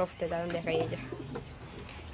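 Domestic pigeons cooing in a loft. A soft voice sounds in the first second.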